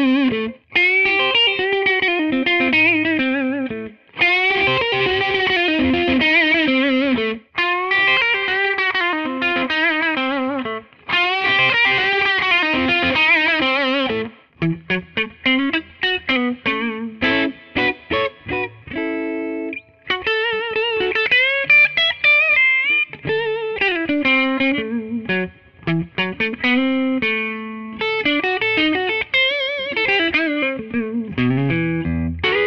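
Gibson ES-335 semi-hollow electric guitar played through a distorted amp, opening on its neck pickup: sustained lead notes with wide vibrato and bends, in phrases broken by short pauses. From about halfway the playing turns to quicker, choppier picked notes before returning to bent, held lines.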